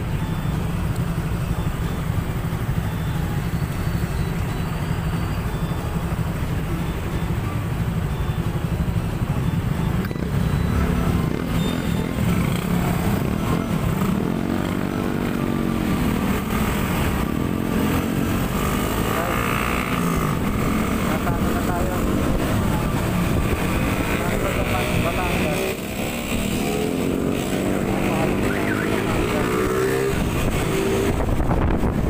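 Small motor scooter engine idling at a standstill, then pulling away about ten seconds in and running on with rising and falling revs among other motorcycles in traffic.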